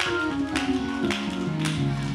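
Church backing music between the preacher's phrases: a keyboard plays held notes stepping downward in a descending line, with a sharp percussive tap about twice a second.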